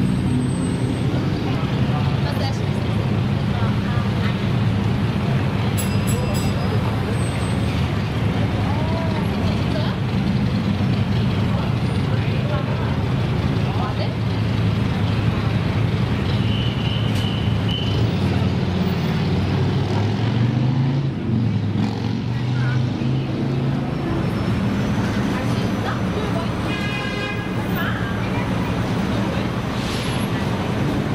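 Steady low rumble of street traffic and idling vehicles, with indistinct voices of people nearby.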